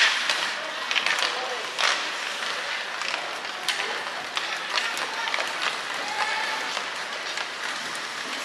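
Ice hockey play on a rink: skate blades scraping the ice, with a scattering of sharp clacks from sticks and puck and indistinct shouts from players.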